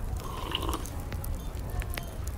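Crackling campfire sound effect: scattered small pops and snaps over a steady low rumble.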